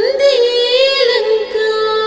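Telugu devotional hymn to Hanuman: a woman sings one held, ornamented note for about a second over a steady drone, then the instrumental accompaniment carries on alone.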